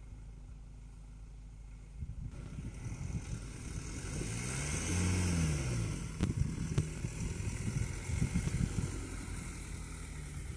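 Small van's engine pulling away over rough grass, growing louder from about two seconds in, with its pitch rising and falling around five seconds in at the loudest point. A few sharp clicks follow.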